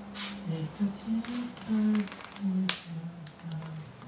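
A person humming a tune quietly, in a string of held notes that step up and down, with faint rubbing and creasing of a paper sheet being folded on a table.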